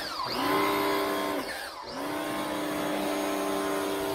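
Kawasaki HPW 220 electric pressure washer's motor and pump running with a steady hum, its pitch dipping twice, at the start and a little before halfway, then recovering. The pump draws from a bucket through a thin intake hose, which the owner finds too narrow for how hard the pump sucks.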